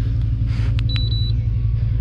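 Minn Kota Terrova 36-volt trolling motor running at a low speed setting: a steady low hum. A short high beep from its handheld remote comes about a second in.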